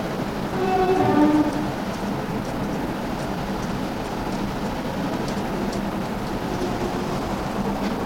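Marker writing on a board, with faint scratches over a steady background hiss. About half a second in, a short hum-like tone sounds for about a second.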